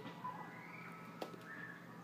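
Quiet room tone with a single faint click about a second in.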